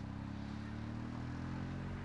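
A steady, low engine hum from a motor vehicle running at an even pace.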